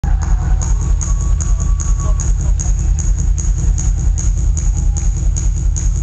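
Electronic duo's live backing of drum machine and synthesizer playing a fast, even beat, with a hissing hi-hat about five times a second over a throbbing bass pulse, loud through a concert PA.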